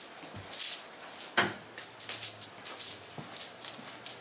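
Soft rustling of sports-bra fabric being handled and shaken out, with a couple of brief sharper rustles about half a second and a second and a half in.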